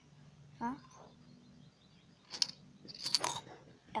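A coin clinking and rattling inside a small clear drinking glass as it is handled, in two short bursts in the second half, the later one with a brief high ring.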